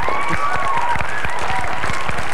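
Congregation applauding, with a drawn-out call from someone in the crowd over the clapping.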